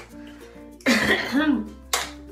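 A woman gives a loud, rough cough about a second in, lasting under a second, over steady background music.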